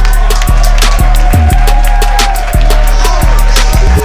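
Hip-hop beat: a heavy, sustained bass with kick-drum hits about every half second, fast hi-hats and a held synth tone above.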